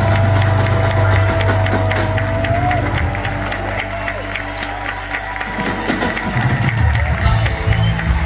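Live rock band playing: a long held high note over bass and drums drops away about three seconds in, leaving crowd cheering and clapping. The band comes back in with bass and drums near the end.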